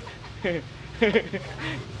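A person's voice: a few short vocal syllables, over a steady low hum.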